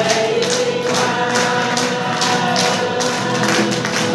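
A church congregation singing a worship song together, with hands clapping steadily on the beat.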